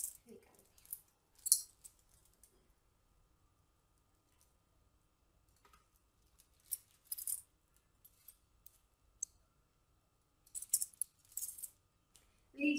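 Metal kitchen tongs clinking and scraping on a foil-lined baking tray, with foil crinkling, as baked chicken drumsticks are lifted off it, in three short bursts with quiet between.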